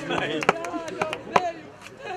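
A few sharp knocks, the two loudest about a second apart, with brief voices in between.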